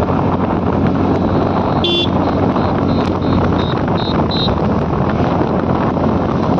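Scooter riding on a mountain road: wind buffeting the microphone over the steady hum of the scooter's engine. About two seconds in there is a short horn toot, then a run of short high beeps that grow louder.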